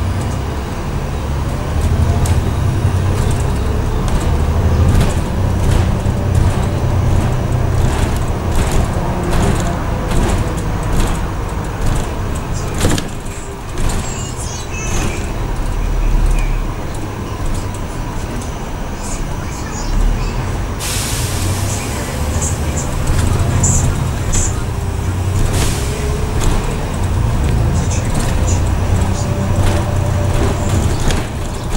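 Cabin noise of a double-decker bus on the move: a steady low engine drone with frequent short rattles and knocks from the bodywork.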